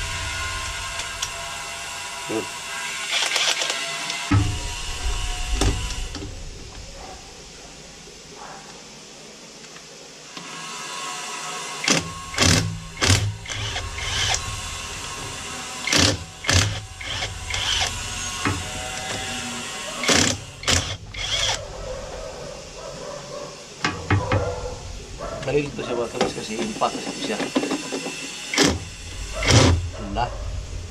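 Cordless impact wrench run in a series of short bursts, loosening the bolts on a scooter's lower body panel, with pauses between bursts in the second half.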